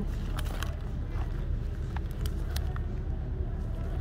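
A small wallet-style coin purse being handled and worked open: a few light, separate clicks over a steady low rumble.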